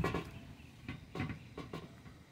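A hand handling moist sphagnum moss in a metal tray, giving a few faint, scattered crackles and soft rustles.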